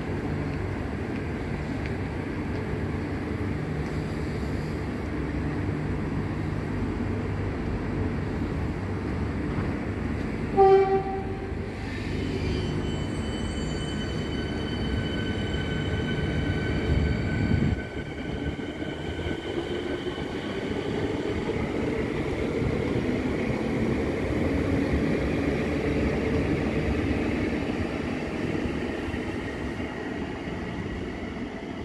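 Melbourne Metro suburban electric train standing at a station platform with a steady low hum. It gives one short horn blast about ten seconds in, then starts pulling away, its motor whine rising in pitch through the second half.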